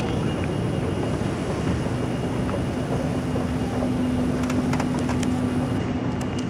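Steady background rumble of a large airport terminal hall, with a constant low hum joining about a second and a half in and a few faint clicks near the end.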